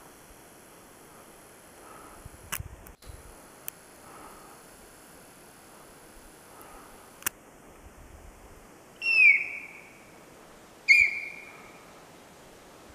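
Two loud, high squeals that fall in pitch, about two seconds apart, the second held a little longer: a sika deer's alarm call.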